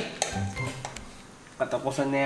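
A fork clinking and scraping against a plate of noodles: a few short clinks in the first second, then a man's voice near the end.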